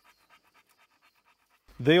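Faint, quick, evenly spaced panting, about ten breaths a second, with a man's voice starting near the end.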